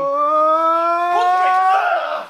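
A man's voice holding one long, drawn-out "ooooh" that rises slowly in pitch and breaks off just before the end, followed by a brief rush of noise.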